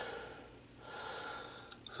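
A faint breath drawn in about a second in, followed by a couple of small clicks just before speech resumes.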